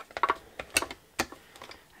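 Clear plastic cutting plates of a Mini Stampin' Cut & Emboss die-cutting machine clicking as the plate, die and cardstock stack is handled and set on the machine's platform: a quick run of sharp clicks just after the start, then two more single clicks about a second in.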